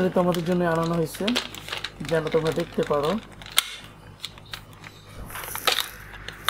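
A man's voice sounds briefly twice, over scattered sharp clicks and knocks from a hard plastic toy gun being handled. Near the end comes a short plastic scrape as the battery cover in the gun's grip is worked open.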